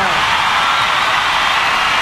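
Large stadium crowd cheering and applauding, a steady wash of noise.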